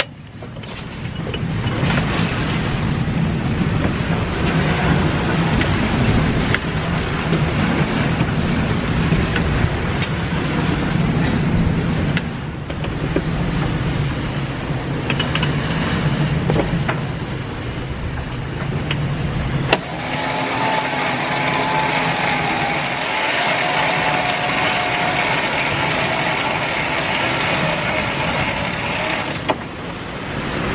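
Wind and sea noise rushing around a sailing catamaran's cockpit in strong wind. About two-thirds of the way through it changes suddenly to a thinner sound with a whine that wavers in pitch.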